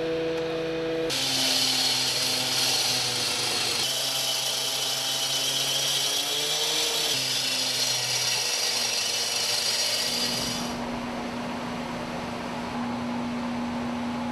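Abrasive cut-off saw cutting through metal: a loud grinding screech from about a second in until nearly eleven seconds, over the saw's motor, which varies in pitch under load and keeps running on after the cut stops.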